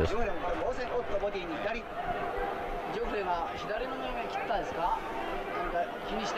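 A man's voice talking at a lower level, with a faint hubbub behind it. This is the old fight broadcast's own commentary and arena sound playing under the video.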